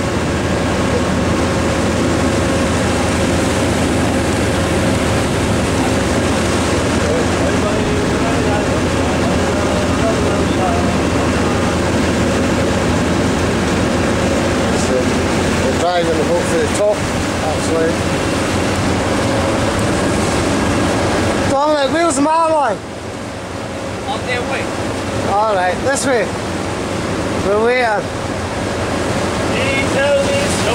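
Steady rush of wind and water over the low drone of a sport-fishing boat's engine while it trolls at sea. The noise dips briefly about two-thirds through, and a few short vocal sounds come in the second half.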